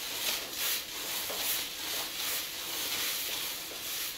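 Stainless steel bowl of dishwater heating on a hot wood stove top, giving a steady sizzling hiss that is calming down.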